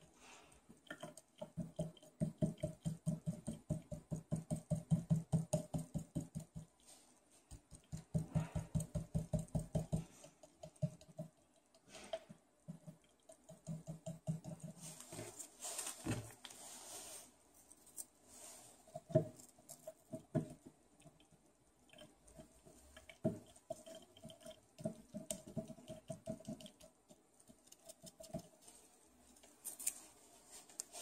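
Quick, light tapping, several taps a second, in two runs of a few seconds each, then scattered shorter taps and clicks as arsenic-test reagent is shaken and tapped into plastic sample bottles. A brief hiss of handling noise comes about halfway through.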